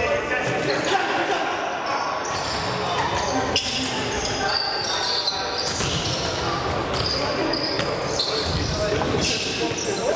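Indoor futsal match in a large, echoing sports hall: players calling and shouting to each other, with scattered thuds of the ball being kicked and bouncing on the court floor.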